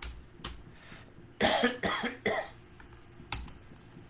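A man coughs three times in quick succession about a second and a half in, with a few single sharp clicks before and after.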